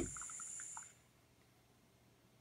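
Gas canister stove hissing after its flame has been put out by coffee leaking from the coffee maker above it, with a few faint ticks. The hiss cuts off suddenly about a second in as the valve is closed.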